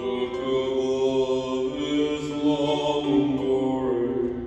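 A small acoustic band with cello, acoustic guitar and mandolin playing a slow song live, moving through long held notes of a second or two each.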